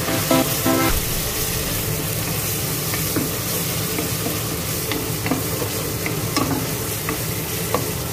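Chopped garlic and red paste sizzling in oil in a stainless steel pot, stirred with a wooden spoon that scrapes and taps against the pot with small scattered clicks. Electronic music plays over the first second, then stops.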